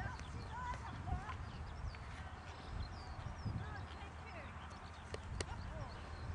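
A horse's hoofbeats on an arena's sand surface as it walks, with small birds chirping throughout and a single sharp click about five seconds in.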